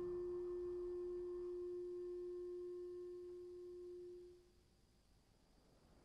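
A single long ringing tone in the soundtrack music, pure and steady with faint overtones, fading away about four and a half seconds in, then near silence.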